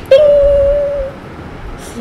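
A woman's voice imitating an oven timer's ding: one held "ping!" note, about a second long, starting sharply and falling slightly in pitch.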